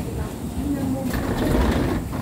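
Rolling rumble of wheeled suitcases and footsteps along a jet bridge floor under the low chatter of passengers. The rumble grows louder and more clattery over the second half.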